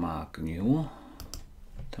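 A short bit of quiet speech, then a few sharp computer clicks a little past the middle as an answer option is selected on screen.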